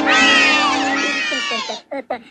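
Chorus of high-pitched, sped-up cartoon mouse voices holding the final note of a song over orchestra. It breaks off after about a second and a half into short squeaky calls.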